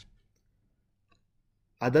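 A pause in a man's lecture speech: near silence with one faint click about a second in, then his voice resumes near the end.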